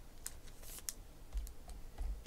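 Faint handling noise of trading cards: a few light, separate clicks and one short rustling scrape as a card is moved and laid down.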